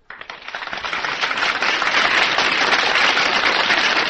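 Studio audience applauding at the end of a song: a dense patter of clapping that swells over the first second and then holds steady.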